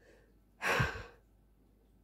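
A woman's sigh: one breathy exhale lasting about half a second, starting a little past halfway into the pause.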